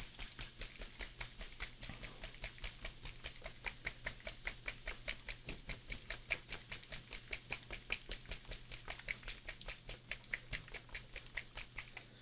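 A small bottle of brown liner paint being shaken hard to remix paint that has not been used recently: a fast, even rattle of about six strokes a second, kept up without a break.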